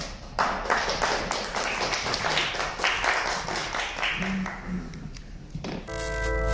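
Small audience applauding; the clapping starts about half a second in and thins out near the end.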